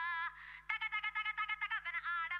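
High-pitched, rapid chattering like sped-up speech. It is broken by a short hiss about a quarter second in, then a sharp click, after which the chattering resumes.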